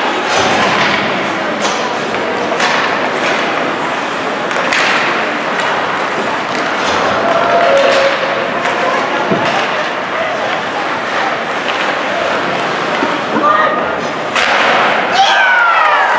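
Ice hockey play in an arena: skates scraping the ice, with stick and puck clacks and thuds against the boards amid shouting voices. Near the end a goal is scored and the crowd and bench break into cheering.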